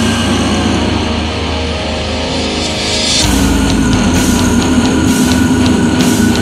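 Deathcore studio recording: distorted guitars, bass and drums playing loudly. About three seconds in, the arrangement shifts into a heavier section with a fuller low end and a regular pattern of sharp cymbal strikes.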